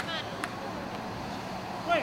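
A spectator shouts "Come on" in encouragement at the start and begins another shout near the end. In between there is only a steady outdoor background hum, broken by a single sharp click about half a second in.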